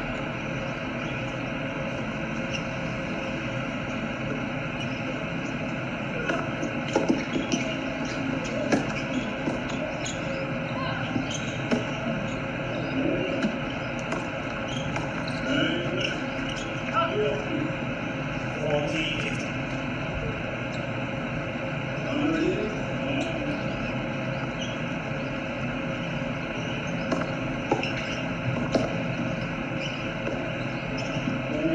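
Tennis balls struck by racquets and bouncing on a hard court, as sharp intermittent pops in irregular clusters over a steady background hum, with some distant voices.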